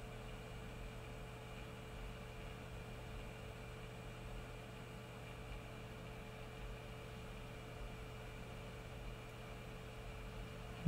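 Hot air rework gun blowing steadily, a constant airy hiss with a low steady hum, while it reflows solder paste under a chip on a circuit board.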